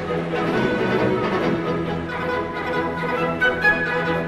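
Orchestra playing sustained, layered notes, with higher notes coming in near the end.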